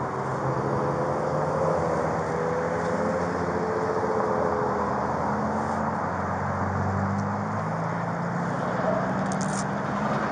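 Vehicle engines running amid steady street traffic noise; one engine's hum rises in pitch over the second half.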